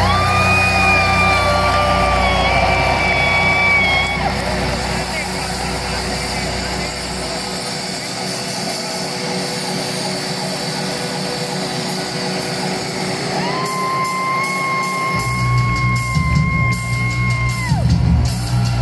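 Live heavy-metal band performance heard from within an arena crowd: two long, steady held notes, one in the first few seconds and one from the middle to near the end, over sustained band sound and crowd noise, the low bass dropping out for several seconds in the middle and coming back in near the end.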